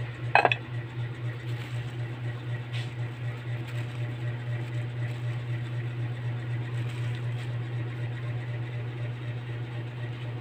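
An aluminium cooking-pot lid clanks once, sharply, about half a second in, as it is set down, over a steady low hum. Soft rustles of the plastic sheet covering the rice follow as it is lifted to check the rice.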